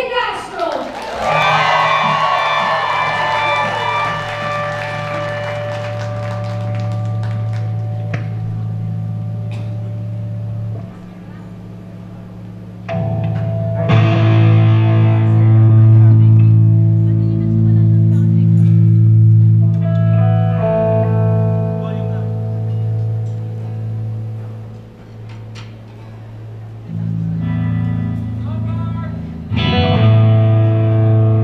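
Live band playing a slow song intro: electric guitar through effects over long held bass notes. The chords change every few seconds, and the playing gets louder about 13 seconds in.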